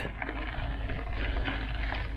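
Bicycle with knobby tyres rolling over a gravel dirt road: a steady, even rolling noise with a constant low rumble underneath.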